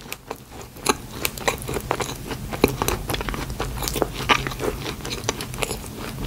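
Close-miked chewing of a mouthful of Krispy Kreme donut with the mouth closed: a steady run of small, irregular mouth clicks.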